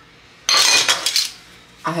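Diced cucumber tipped into a stainless steel bowl of cooked pasta: one short rattle of pieces landing, starting about half a second in and lasting under a second.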